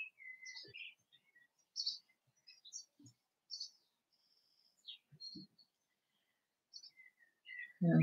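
Faint birdsong: scattered short chirps and whistles at irregular intervals, with a few soft low knocks in between.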